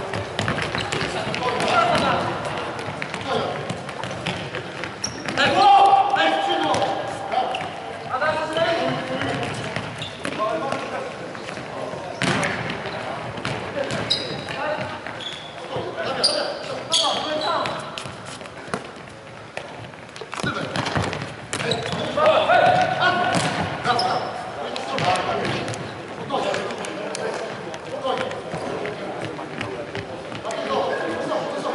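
Futsal match sounds in a large sports hall: players calling out to each other, with the ball being kicked and bouncing on the wooden floor, repeatedly throughout.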